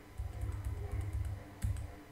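Computer keyboard and mouse being worked on a desk: a scatter of light clicks with low knocks, the loudest knock about one and a half seconds in.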